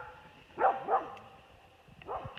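A dog making two short vocal sounds, about half a second and a second in.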